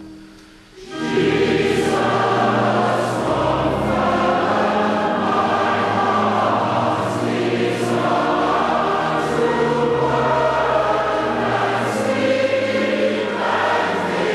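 A choir singing sacred music in long, held chords. The singing comes in about a second in, after a brief quiet.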